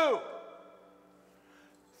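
A man's drawn-out spoken count word falls and trails off at the start, echoing in a large hall. Then comes a pause of about a second and a half, near silent apart from a faint held chord of soft background music.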